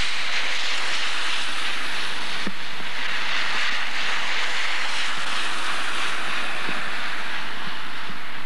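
Car tyres hissing on a wet, slushy road: a steady, even hiss with a few faint clicks.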